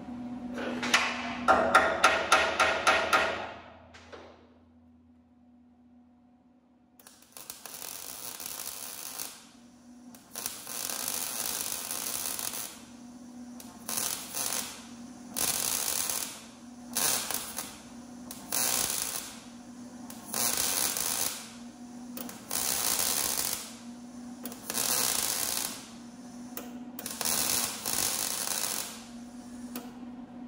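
A MIG welder laying short stitch welds on a steel truck frame: about ten bursts of crackling arc hiss, each a second or two long, over a steady low hum. Before the welding, in the first few seconds, comes the loudest sound: a quick run of about a dozen ringing metallic knocks.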